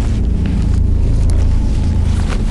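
A loud, steady, low rumbling noise, a comic sound effect.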